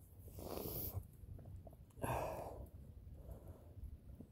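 A man breathing twice, close to a phone's microphone, in two soft breaths about two seconds apart.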